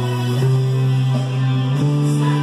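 Music with long held low notes that step up in pitch twice, played on an electric bass.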